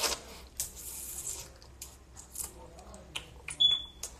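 Scattered short rustling and scraping noises, then a single short, high-pitched electronic beep near the end.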